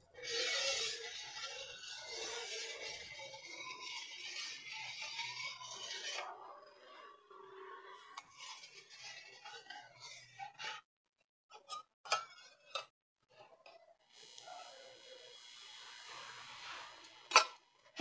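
A steel spoon stirring milk in a stainless-steel pan, faintly scraping and rubbing against the pan, with a few light clinks later on; the milk is being stirred as vinegar-water is added to curdle it into chhena.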